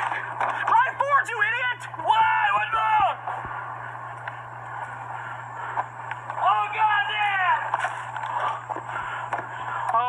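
Voices yelling in alarm in three bursts: about a second in, at two seconds, and again around six and a half seconds, with a steady low hum underneath.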